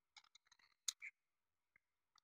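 Faint clicks and light scraping of a thin metal tool prying at the plastic body shell of an N gauge 223 series model train car, trying to release the roof's snap clips; one sharper click comes a little under a second in.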